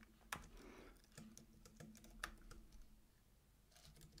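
Faint, irregular keystrokes on a computer keyboard. The sharpest click comes about a third of a second in, and the typing pauses shortly before the end.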